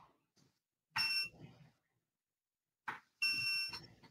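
Two short electronic beeps about two seconds apart, the second a little longer, each a chord of steady high tones, with a click just before the second. It is the alert of a recording system as the court record is stopped.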